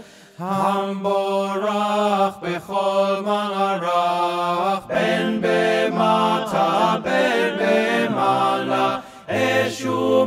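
A choir singing a Hebrew liturgical piece in slow, held phrases separated by brief pauses for breath. Deeper bass voices join in near the end.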